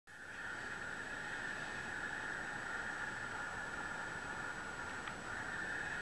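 Steady background noise: an even hiss with a thin high whine and no distinct events, apart from one faint tick about five seconds in.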